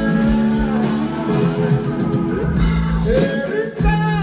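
Live rock band playing through a concert sound system: electric guitar and drums.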